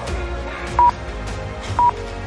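Two short electronic beeps of the same pitch, a second apart, from a workout interval timer counting down the last seconds of a rest period, over background music.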